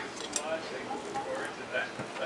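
Faint voices in the background, with a light click about a third of a second in.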